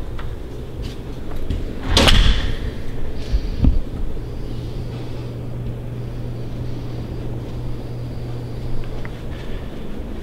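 An interior door shutting with a sharp thud about two seconds in, followed by a lighter knock over a second later, against a steady low hum.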